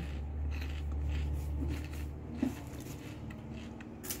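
Crunchy cassava-starch puffs (biscoito de polvilho) being chewed: faint, irregular crunches over a steady low hum.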